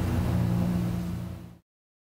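Background music with held low notes, fading out and then cutting off abruptly to silence about one and a half seconds in.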